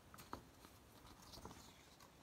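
Near silence, with a few faint taps and rustles from sheets of paper being handled: a couple near the start and one about one and a half seconds in.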